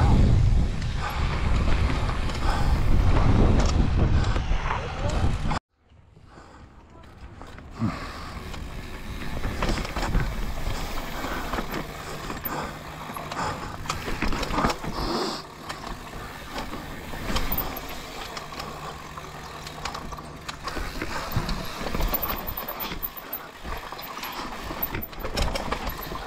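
Mountain bike ridden fast downhill with wind rushing on the microphone, which cuts off suddenly about five seconds in. After that the tyres run over rocks and roots with frequent knocks and clatters from the bike, quieter than the wind before.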